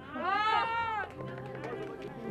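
A high-pitched, drawn-out excited cry from a voice, gliding up and then down in pitch for about a second. Softer chatter and background music follow.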